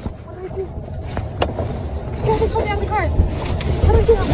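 Steady low rumble of a moving car heard from inside the cabin, with short voiced cries between about two and three seconds in and one sharp knock about a second and a half in. The rumble grows louder in the second half.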